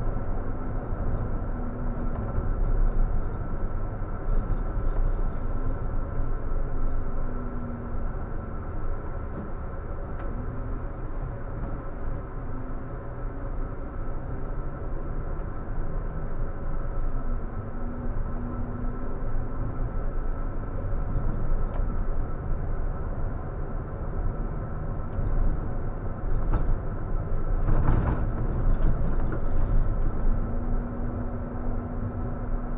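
Coach bus on the move, heard from the driver's cab: steady engine drone and road rumble, the engine note drifting slightly up and down, with a thin steady whine above it. A brief louder noise about two seconds before the end.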